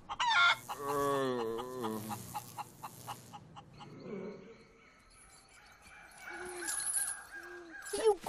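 An animated sulphur-crested cockatoo's drawn-out screech, wavering and falling in pitch, in the first two seconds. It is followed by faint night jungle sound with a thin, high insect buzz.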